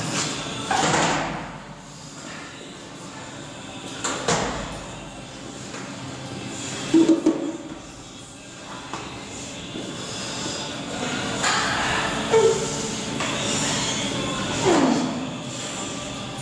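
Plate-loaded lever row machine worked through slow repetitions, the weighted arms moving with sliding and knocking every few seconds. Two short, loud grunts of effort come about midway and again near three-quarters through.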